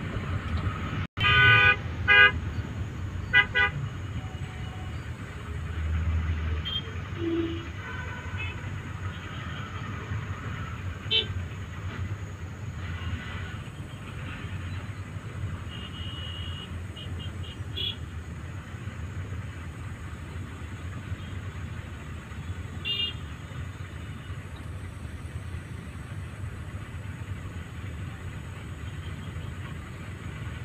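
Vehicle horns honking in several short toots, loudest a second or two in and again a little later, with fainter toots scattered through. Under them runs a steady low engine rumble and a murmur of crowd voices.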